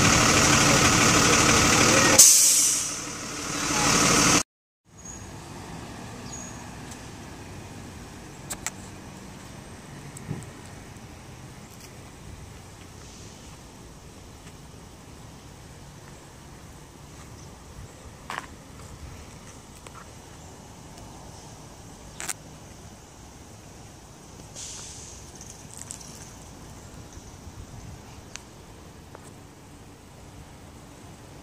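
IC CE school bus diesel engine idling loudly, then about two seconds in a sudden loud air-brake hiss that dies away over a couple of seconds. After that the sound drops off sharply to faint street background with a few scattered small clicks.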